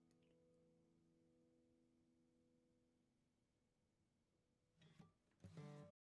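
Very faint closing of a guitar-and-banjo instrumental: a held chord slowly dies away, then two brief louder bursts near the end before the sound cuts off.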